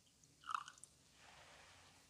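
A faint clink of a glass cruet against the chalice about half a second in, then the soft hiss of liquid starting to pour from the cruet into the chalice.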